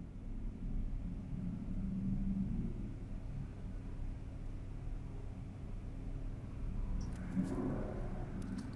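A low, steady background rumble with a faint hum, swelling slightly about two seconds in.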